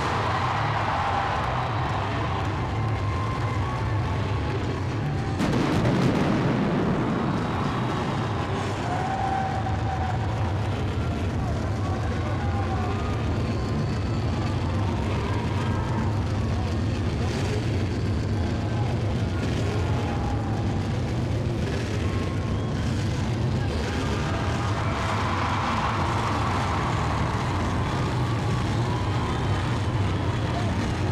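Loud, steady arena din with a low rumble throughout and a sudden pyrotechnic blast about five and a half seconds in, from the fireworks and flame jets of the entrance stage.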